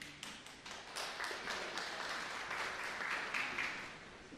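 Church congregation applauding: a few scattered claps build quickly into full applause, which begins to fade near the end.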